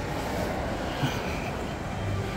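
Steady low rumble and hubbub of a large indoor shopping-mall atrium, with one brief knock about a second in.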